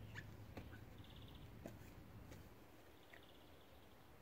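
Faint birdsong in near silence: a short, rapid high trill heard twice, about two seconds apart, with a few brief chirps near the start.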